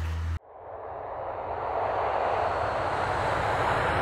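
Steady rushing road and wind noise from a vehicle travelling on a freeway, swelling over the first couple of seconds and then holding. It follows a low street-traffic hum that cuts off abruptly under half a second in.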